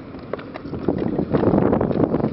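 Inline skate wheels rolling over rough concrete, a steady rumble that grows louder about a second in, mixed with wind buffeting the microphone.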